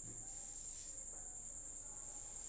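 Faint squeaks and scratches of a marker writing on a whiteboard, over a low steady hum.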